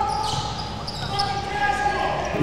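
Court sounds of a basketball game in a large gym: a basketball bouncing on the hardwood floor with scattered knocks and short squeaks from the players' movement, over a steady tone.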